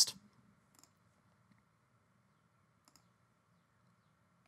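Two faint, short clicks about two seconds apart, over a low steady hum of background noise.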